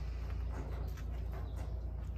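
Outdoor background sound: a steady low hum under faint, even noise, with no distinct event.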